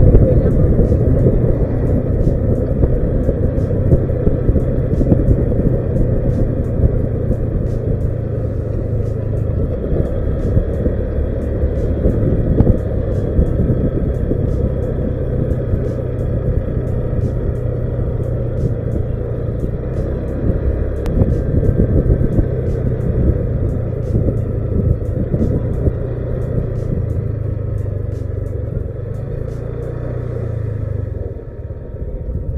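A Honda Vario scooter's single-cylinder engine running while riding, with a steady rumble of engine and wind noise on the action camera's microphone. It is loudest at first and eases off slightly toward the end.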